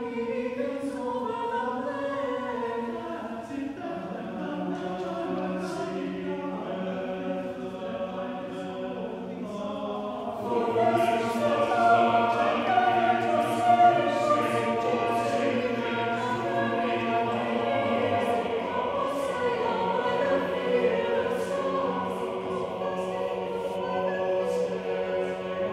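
Mixed choir singing unaccompanied in sustained chords. About ten seconds in the sound gets fuller and louder, with a low bass note held underneath for several seconds.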